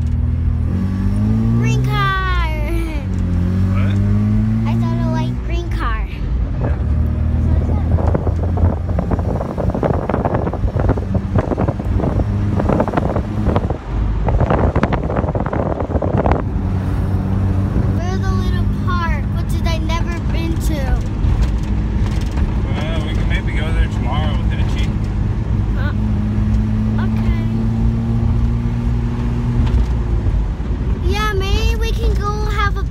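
Mazda RX-7 rotary engine heard from inside the cabin while driving: it climbs in pitch twice in the first few seconds as the car pulls through the gears, then settles to a steady cruise with road noise.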